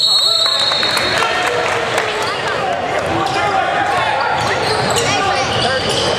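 Basketball bouncing on a gym floor during a game, a run of short thuds in a large echoing hall, with voices in the background.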